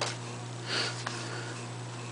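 A single short sniff about a third of the way in, with a faint click near the middle, over a steady low hum.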